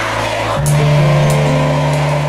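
Live band playing amplified music: a held keyboard chord over a bass note, shifting to a new chord about half a second in, with a few sharp cymbal-like hits from the electronic drum pad.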